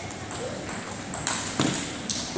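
A table tennis ball clicking sharply off bats and the table, a few quick hits in the second half.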